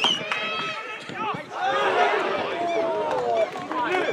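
Several voices calling and shouting over one another on a football pitch, with no clear words: players and spectators during open play.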